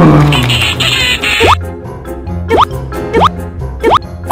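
Playful background music with a cartoon 'bloop' sound effect repeated four times in the second half, each a short blip sliding quickly upward in pitch.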